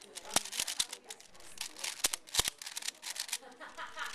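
Plastic 5x5 Rubik's cube being turned rapidly by hand: a fast run of clicks and clacks as its layers are twisted. The sharpest snaps come about half a second, two seconds and two and a half seconds in.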